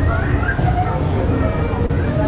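Indistinct voices of several people talking at once, with some high gliding vocal sounds, over a steady low hum.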